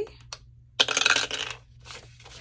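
A die dropped into a small dice tower, clattering down inside it and into the tray for a little over half a second, starting just under a second in.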